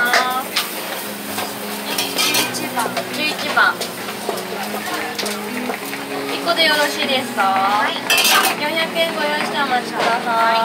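Metal serving spoons clinking and scraping in stainless-steel topping trays at a crepe counter, with short clicks scattered through. Voices come in now and then.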